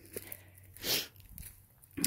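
A single short, breathy sniff or exhale close to the microphone about a second in, with faint ticks and rustling around it.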